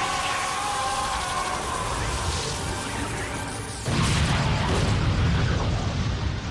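Cartoon action sound effects: a steady rushing hiss with a whoosh, then about four seconds in a sudden loud explosion whose low rumble carries on.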